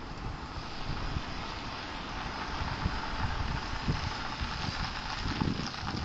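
A vehicle passing on the street, its tyre noise swelling through the middle and easing near the end, with gusts of wind rumbling on the microphone.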